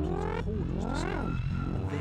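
Serge modular synthesizer patch: pitched tones glide up and back down in arcs over a steady low drone, with a held higher tone joining in the second half.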